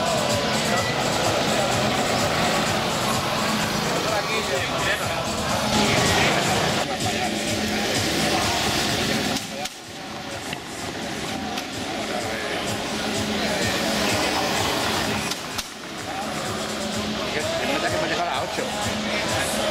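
Busy street ambience: music playing from the bars mixed with people talking and some motor traffic. The sound briefly drops a little before halfway and again near the end.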